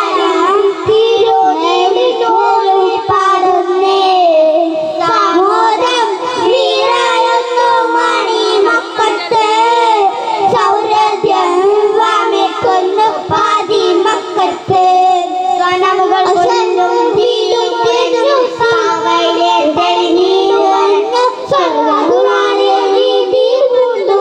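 Three young boys singing a song together into handheld microphones, their voices carrying on without a break.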